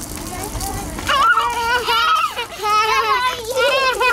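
A young child crying in high, wavering wails, starting about a second in, after hurting herself in a fall.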